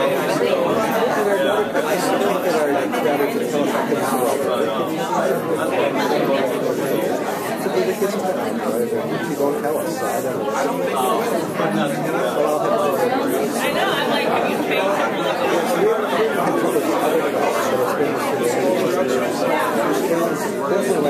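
Many people chatting at once, overlapping conversations with no single voice standing out, running steadily.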